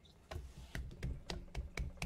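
Faint, irregular clicking on a computer: about eight short clicks in a second and a half, the sound of keys or a mouse being pressed.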